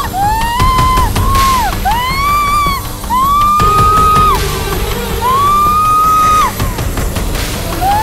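Dramatic background score: a high wailing melody of about five long held notes, each sliding down at its end, over a low rumbling bed.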